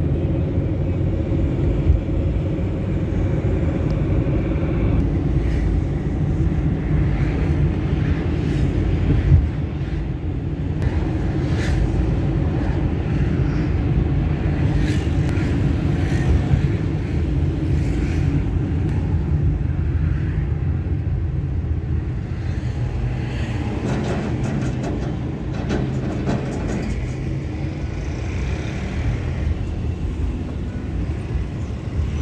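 Steady engine and road rumble heard from inside a moving vehicle, with a couple of brief knocks.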